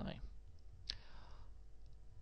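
A single sharp computer-mouse click about a second in, against a low steady hum.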